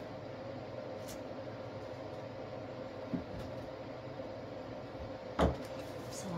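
Handling knocks on a worktable: a light tap about three seconds in and a sharper knock near the end, over a steady hum.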